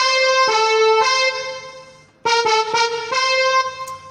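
Electronic keyboard playing a melody in the key of F as a demonstration: a phrase of held notes that fades out about halfway through, then a quick run of notes ending on a held note.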